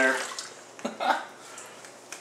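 The last of a rinse of sugar water poured from a metal bowl through a plastic funnel into a plastic 2-liter soda bottle, with a single short knock a little under a second in, then quiet.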